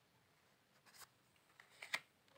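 Near silence, then a few soft clicks and a brief brush near the end as a tarot card is laid down on a crocheted tablecloth.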